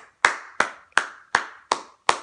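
A child clapping his hands in a steady, even rhythm of about three claps a second.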